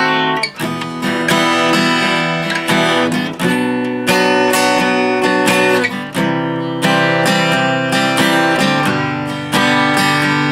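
Steel-string acoustic guitar strummed through a chord progression, the chord changing about every three seconds.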